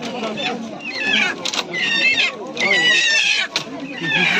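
An animal squealing: three loud, high-pitched wavering cries about a second apart, over people's voices.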